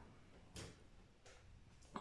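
Near silence: room tone, with one faint tap about half a second in and a fainter one near the middle, from clay pieces being handled on the wooden board.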